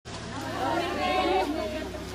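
Chatter of several women's voices talking over one another, with a steady low hum underneath.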